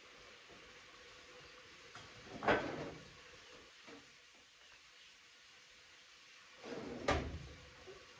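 A kitchen cabinet opened and shut: two knocks about four and a half seconds apart, the first about two and a half seconds in and the second near the end, each with a short sliding sound just before it.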